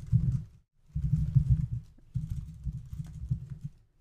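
Typing on a computer keyboard: quick keystrokes in several short runs, with a brief pause about half a second in.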